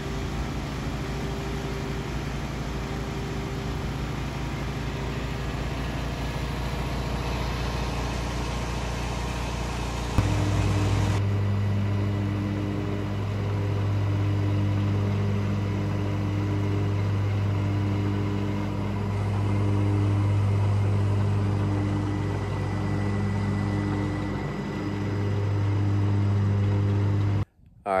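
Zero-turn riding mower engine running steadily while mowing grass; the sound changes abruptly about ten seconds in to a lower, steadier hum.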